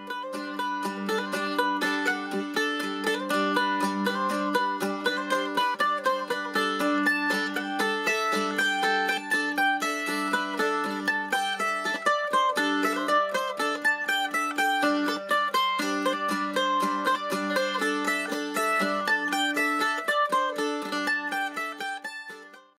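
A-style mandolin played with a pick: fast, continuous tremolo strumming over steady low drone notes, with a shifting line of higher notes above.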